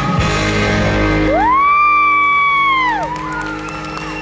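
A dance track ending on a held final note. Then a spectator gives one long, high-pitched cheering "woo" that rises, holds for about a second and a half and falls away. A shorter, fainter one follows near the end.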